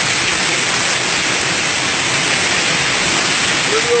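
A waterfall pouring close by: a loud, steady, even rush of falling water.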